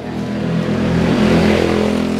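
A motor vehicle engine running and going by, its sound swelling to a peak about a second and a half in, then easing off.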